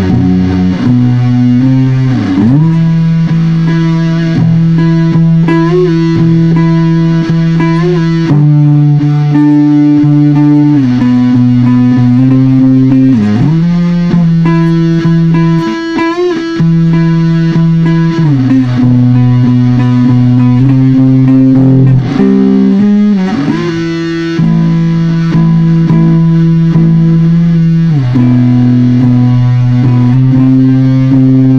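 Electric guitar played through heavily distorted amps, holding long sustained chords that change every few seconds, with sliding pitch bends between some of them.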